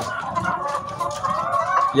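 Flock of caged brown laying hens calling, several drawn-out overlapping calls at once.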